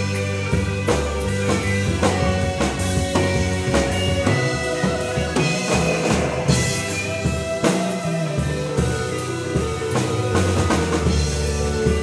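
A live rock band playing an instrumental passage: drum kit keeping a steady beat under bass, guitar and keyboards holding sustained notes.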